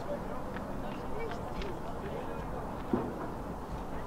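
Indistinct distant voices over steady open-air ambience at a soccer field, with one short knock about three seconds in.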